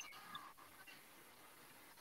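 Near silence: room tone, with a faint trace of breath or murmur in the first half second.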